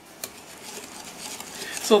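Wire whisk stirring sugar and dried seasoning into thick tomato sauce in a glass bowl: a soft wet swishing that slowly builds, with a light tick of the whisk against the glass shortly after the start. A woman starts to speak at the very end.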